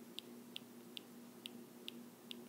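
Faint, light ticks of a stylus tip on a tablet screen during handwriting, about two to three a second, over a low steady electrical hum.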